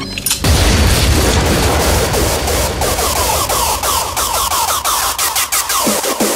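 Hardcore electronic dance music: a loud wash of noise with a heavy low rumble, into which distorted hardcore kick drums build from about halfway, each kick falling in pitch, settling into a steady fast beat.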